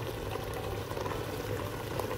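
Chicken chorba base bubbling in a pot, a steady simmer with small scattered pops.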